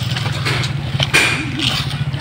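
A motorcycle engine idling steadily, with a brief click and a short voice sound about a second in.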